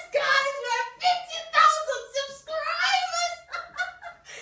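A woman's voice in high-pitched, excited squeals and laughter, a quick run of short rising and falling cries.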